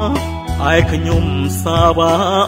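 Khmer pop song: a man's voice singing a phrase about half a second in and another near the end, the second wavering in pitch, over steady sustained backing and bass.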